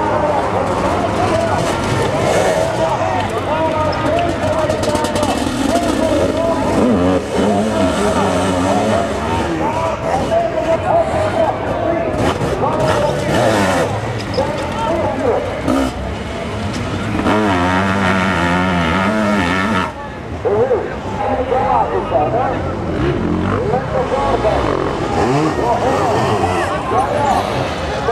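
Sidecar motocross outfits' engines racing, revving up and down as the outfits climb and corner on the dirt track.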